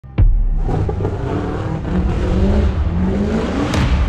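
A heavy thump, then a car engine running, its revs slowly rising and falling.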